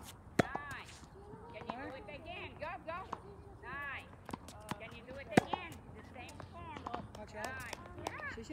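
Tennis ball struck by a racket: two sharp hits about five seconds apart, the first about half a second in, with fainter ball pops and voices in the background.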